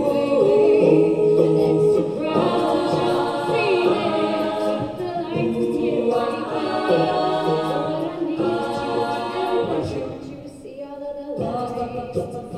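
Mixed men's and women's a cappella group singing layered harmonies through microphones, holding chords that change every second or two. The sound thins and drops briefly near the end before the full group comes back in.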